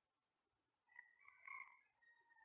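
Near silence, broken about a second in by a faint pitched animal call lasting about a second.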